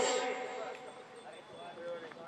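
A lull in a man's microphone speech: his voice trails off at the start, leaving only faint voices in the background.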